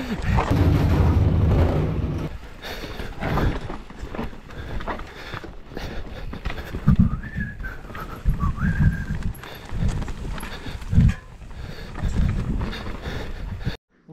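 Mountain bike riding fast down a dirt singletrack: tyres rumbling over the ground with frequent knocks and thuds as the bike hits roots and stones. The sound cuts off suddenly just before the end.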